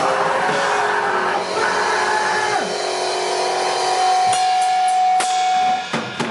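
Live crust punk band with distorted guitar, bass and drums playing hard. About halfway through, the playing gives way to a long held high note with two cymbal crashes, and it breaks off shortly before the end, as the song finishes.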